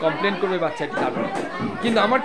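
Voices talking and chattering, several people at once.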